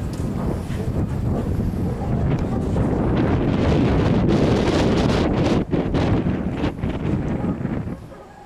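Wind buffeting the camera microphone: a loud, rough low rumble that swells to its strongest in the middle and drops off suddenly at the end.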